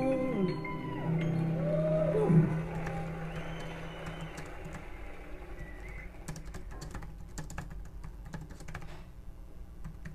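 The end of a sung worship phrase dies away in the first two or three seconds. From about six seconds in, computer keyboard typing and clicks follow, irregular and fairly quiet.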